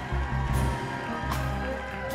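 Live band playing soft sustained chords on keyboards, with a bowed violin and low held bass notes underneath.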